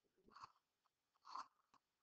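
Near silence: room tone on a computer microphone, broken by two faint short noises, one about half a second in and one near the end.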